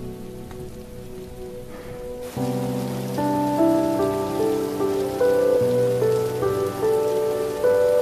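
Rain falling on window glass, starting about two seconds in, under a slow, soft melodic music score that also swells at the same point.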